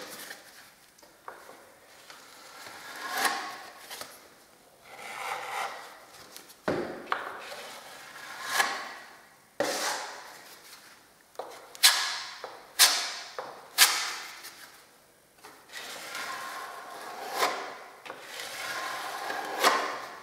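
Filler knife spreading and scraping polyfiller along the plaster reveal beside a uPVC window frame: a series of uneven scraping strokes, some starting with a sharp tap.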